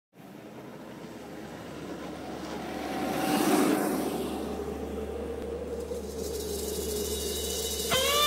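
A motorized cooler scooter (Cruzin Cooler) passing by on a dirt track with a steady motor whine. The sound builds, is loudest about three and a half seconds in as it goes by, then fades.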